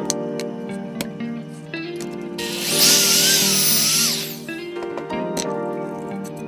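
Power drill boring a pocket hole through a pocket-hole jig into baltic birch plywood, running for about two seconds in the middle, its pitch dipping and rising as it cuts. Background music plays throughout.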